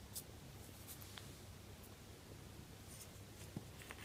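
Faint, scattered light clicks and taps from a small plastic cup handled against a plastic candy-kit tray while water is tipped onto powdered candy mix, over quiet room tone.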